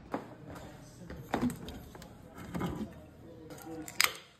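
Faint television sound of a football game broadcast, with a commentator's voice in the background. At the very end, a sharp crack and hiss of a drink can's pull-tab being opened.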